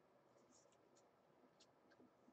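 Near silence with a few faint, short scratches: the corner of a card scraping through wet acrylic pour paint on canvas to draw a thin branch.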